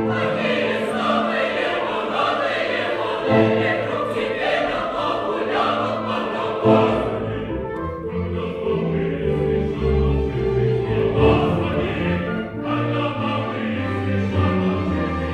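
Opera chorus of men's and women's voices singing with orchestra. About halfway through, the sound thins to lower held notes before fuller singing returns near the end.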